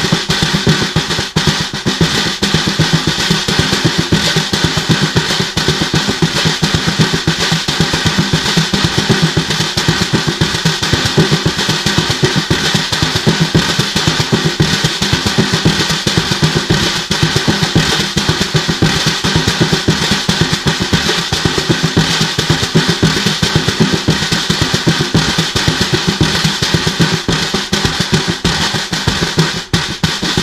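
Snare drum played with bare hands and fingers: a fast, unbroken stream of strokes on the head, kept up without a pause.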